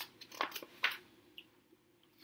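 Paper pages of a softcover picture book being turned by hand: a few short, soft rustles in the first second.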